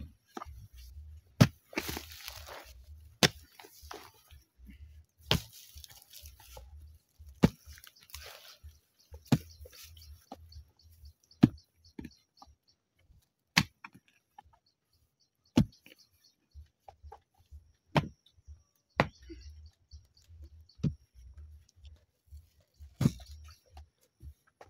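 A long-handled hoe chopping into soil while a hole is dug, one sharp strike about every two seconds, with short scrapes of loosened soil between some of the strokes.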